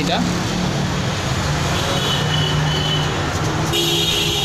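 Steady road traffic noise with a low engine drone underneath, and brief high tones about two seconds in and again near the end.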